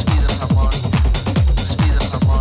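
Techno music played from a DJ mix: a steady, even kick drum, each hit dropping in pitch, with hi-hats and percussion ticking above it.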